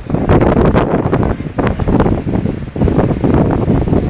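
Wind buffeting the microphone: a loud, gusty rumble that rises and falls, with a brief lull near the end.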